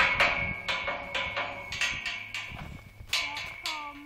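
Tubular steel farm gate being knocked repeatedly, about three to four knocks a second, each ringing with a steady metallic tone; the knocks grow fainter and sparser toward the end.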